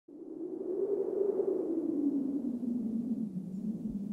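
Low droning sound effect that fades in at the start and slowly sinks in pitch, with a faint airy hiss over it.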